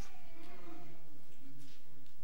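Faint, distant voices from the congregation, opening with a higher, drawn-out wavering voice-like sound.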